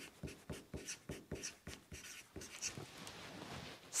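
Marker writing on a whiteboard: a quick series of short strokes, about four a second, thinning out after about three seconds.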